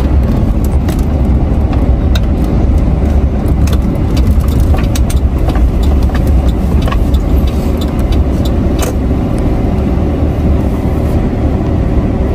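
Noise inside a moving car: a loud, steady low rumble of road and engine, with scattered light clicks and taps.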